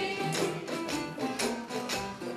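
Jug band playing an instrumental passage, with strummed and plucked string instruments over a steady, evenly struck rhythm.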